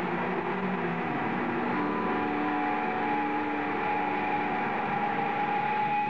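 Amplified electric guitar droning on long, held notes that shift in pitch every second or two over a dense wash of sound, with no beat or strumming.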